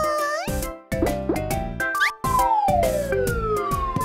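Cartoon slide sound effect over bouncy children's music: a quick upward whistle glide about two seconds in, then one long falling whistle glide as the character slides down into the ball pit. A short rising whoop is heard at the start.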